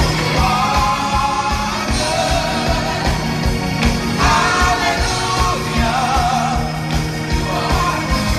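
Gospel vocal ensemble singing together in harmony over live band accompaniment, with a steady drum beat underneath.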